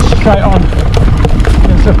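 Trek Remedy full-suspension mountain bike riding fast down a dirt singletrack: a steady low rumble of wind and tyres on the microphone with frequent rattling knocks from the bike over rough ground. A short spoken sound from the rider comes about a quarter of a second in.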